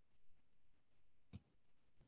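Near silence: the quiet line of an online call, with one brief faint click about a second and a half in.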